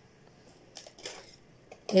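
A few faint, light clicks of small plastic items being handled: a plastic nail tip and glitter-powder jars, with quiet room tone between. A woman's voice begins near the end.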